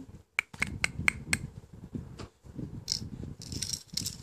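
A quick run of about five sharp clicks in the first second and a half, then a short high hissing rustle near the end.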